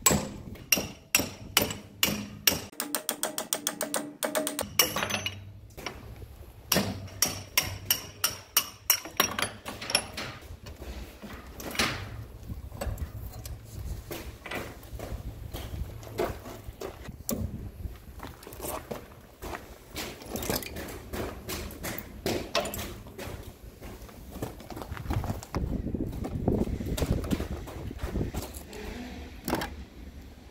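Hammer blows on steel as the steer cylinder pins are driven out, several a second in the first few seconds and again around eight seconds in, the metal ringing after the strikes. Then scattered clanks and knocks as the heavy hydraulic cylinders are handled and set down.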